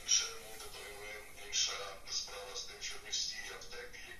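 A person's voice talking, with sharp hissing consonants.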